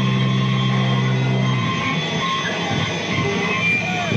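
Live rock band playing loud and noisy: electric guitar over drums, with a steady low note that stops about a second and a half in.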